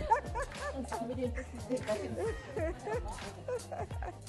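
Soft background music with a steady bass line, under faint scattered voices and small noises from the room.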